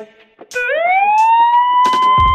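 Siren-like alarm tone from a smartphone alarm-clock app. It slides up in pitch about half a second in, then holds steady, over background music.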